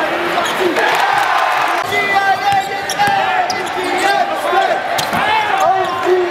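Sound of a basketball game on the court: a basketball bouncing on the hardwood floor with sharp thuds, sneakers squeaking, and players' and spectators' voices mixed underneath.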